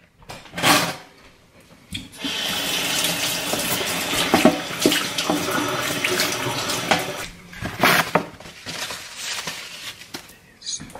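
Kitchen tap water running steadily for about five seconds, from about 2 s in, with short knocks before and after it.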